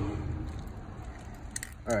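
A motor vehicle's engine hum that fades away within the first second, leaving a faint background rumble.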